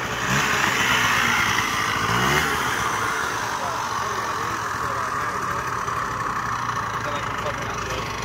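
Small Piaggio Zip scooter engine revving as it rides around, its pitch rising near the start and again about two seconds in, then running more steadily and a little quieter.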